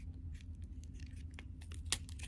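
Thin plastic blister packaging crinkling and clicking as fingers pry a small toy figurine out of it, with one sharper plastic click near the end.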